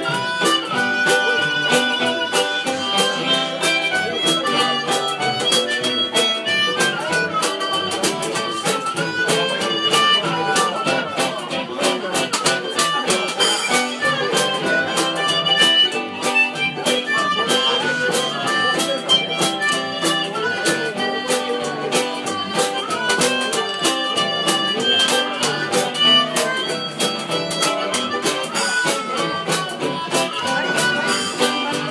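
Jug band playing an up-tempo old-time tune: a harmonica carries the melody over a steady strummed rhythm from a Gibson UB-1 banjo ukulele and a Gretsch New Yorker archtop guitar, with a blown jug supplying the bass.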